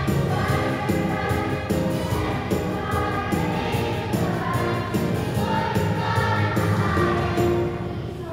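Children's choir singing over instrumental accompaniment with a steady beat. The music thins briefly near the end.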